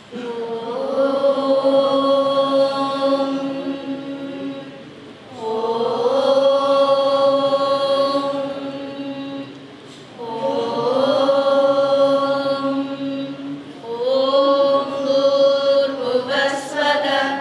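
A group of voices chanting in unison: long phrases that each rise into a held note for about four to five seconds, starting again about every five seconds.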